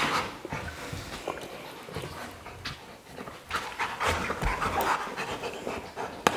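A large dog panting while it mouths and chews a plastic Jolly Ball toy, with scattered clicks and scuffs of teeth and paws on the ball.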